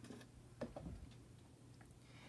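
Faint taps and rustle of cardboard picture blocks being picked up and handled, a few soft clicks about half a second to a second in, otherwise near silence.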